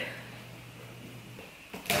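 Faint room tone with a steady low hum, then near the end a box cutter slicing through the packing tape on a cardboard box, starting suddenly and loud.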